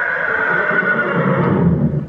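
A horse whinnying: one long call, high at first and sliding slowly down, turning lower and rougher near the end.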